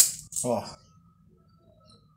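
A single sharp metallic clink as an angle grinder's metal gear housing is pulled off the gear and shaft, followed by a short spoken word.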